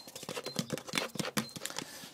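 Clear plastic drink bottles being screwed into a double cap made of two glued bottle caps. The thin plastic ticks and crackles in a quick, irregular run of small clicks, with a few brief squeaks.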